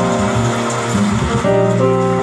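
Live jazz combo recording, with a guitar playing a line of held notes over walking bass.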